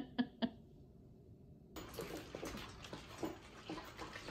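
Miniature schnauzers eating from slow-feed bowls, one plastic and one steel: faint, irregular small clicks and rustles of food and muzzles against the bowls. A few sharper short clicks come right at the start.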